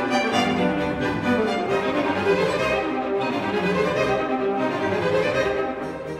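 Orchestral music led by bowed strings, with violin and cello playing sustained notes that change every second or so.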